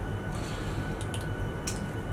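Aloe vera gel squeezed out of a plastic squeeze bottle onto skin: a few faint, short squelches and clicks about a second in and again near the end, over a steady low room hum.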